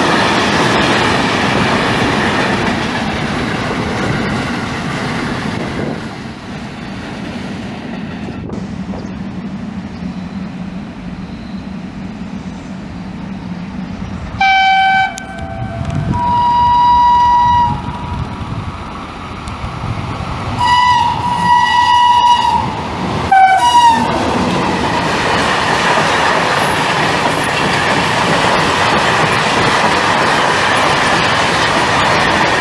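Freight wagons rushing past at speed, then an electric freight locomotive sounding its two-tone horn in four blasts as a greeting while it approaches, the two pitches alternating. The train of covered freight wagons then rolls past close by with a loud rush and clickety-clack.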